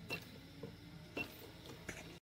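Spot welder pen probes firing welds through a copper strip onto lithium-ion cells: three sharp snaps, the second about a second after the first and the third soon after, over a faint steady hum.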